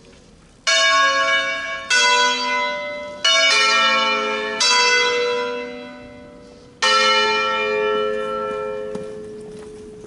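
Church bells of a five-bell set tuned in A, hung on wheels and swung full circle in the Italian concerto style, rung as a funeral concerto. Six strikes come at uneven spacing, two of them close together, and each rings on and slowly dies away. The last strike, the longest, is left to fade. The bells are thought to be Colbachini castings from Padua.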